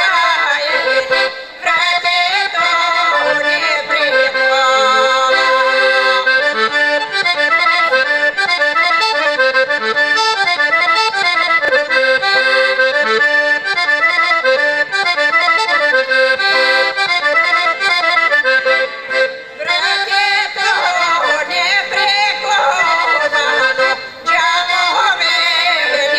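Piano accordion playing a folk tune in steady, running notes. A woman's singing voice comes in briefly at the very start and again for a few seconds after about 20 seconds, over the accordion.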